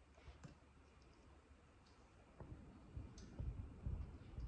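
A few faint, scattered clicks from a laptop being tapped under the fingers, over quiet room tone, with a low rumble growing in the second half.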